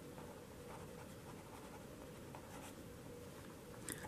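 Felt-tip marker writing a word on paper: faint, short scratchy strokes of the tip across the sheet.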